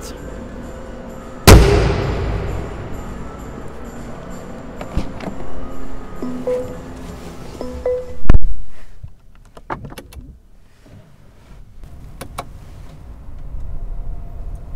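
The bonnet of a 2021 Mercedes-Benz S580 is pushed down and shuts with a loud slam about a second and a half in, echoing in the concrete garage. About eight seconds in, a car door closes with a heavy thud, the loudest sound here, and it is quieter after that.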